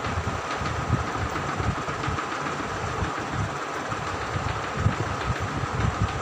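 Chalk tapping and scratching on a blackboard as a row of small cells is drawn, with a few faint ticks over a steady background hum and an uneven low rumble.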